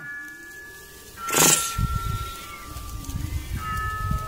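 Background music of sustained chime-like tones, with one short, harsh screech about a second and a half in from mating cats.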